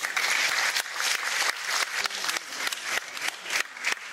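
Opera-house audience applauding: a dense clatter of many hands clapping at once.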